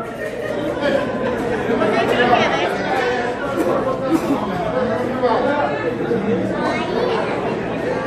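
Crowd of spectators chattering, many voices talking over one another at once.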